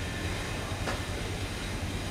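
Low, steady rumble and hum of background room noise, with one faint click about a second in.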